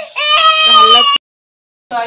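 Infant crying: one long wavering wail that cuts off abruptly a little over a second in.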